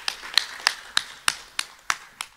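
Sparse applause from a small audience: one pair of hands clapping loudly at a steady pace of about three claps a second over fainter clapping.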